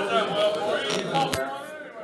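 Indistinct voices talking, with two sharp clicks about a second in.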